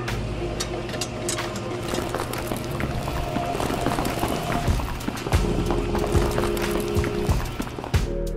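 Background music over a small toy electric motor turning a metal auger that bores into sand, with gritty scraping and crackling from the sand.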